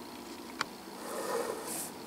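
Quiet handling noises of steel bar stock and measuring tools on a workbench: a single light tap, then soft rustling and a brief high scrape near the end.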